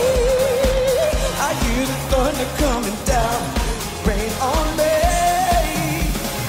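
Pop song playing: a sung vocal melody over a steady bass-drum beat.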